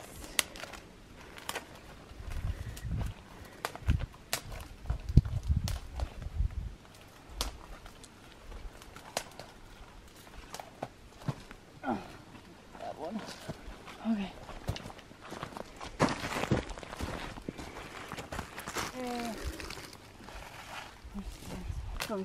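Dry conifer twigs snapping as they are broken off by hand, in many sharp, separate cracks, with footsteps on snow and forest litter and low thuds in the first few seconds.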